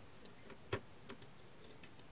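Faint, light clicks of a screwdriver tip turning a small screw in a multimeter's circuit board, a few separate ticks with the clearest a little under a second in.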